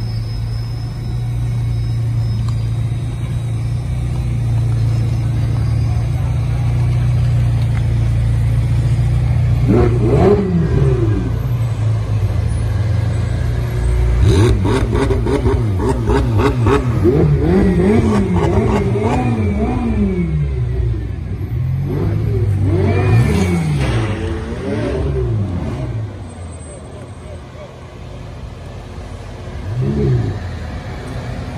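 Sports car engines running with a steady low drone, then revved again and again from about ten seconds in, each rev rising and falling in pitch, before quietening near the end.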